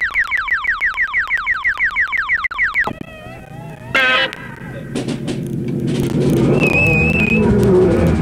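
Electronic synthesizer effects: a rapid run of falling zaps, about seven a second, for the first three seconds, then wavering warbling tones, and from about halfway a low rumbling noise that grows louder.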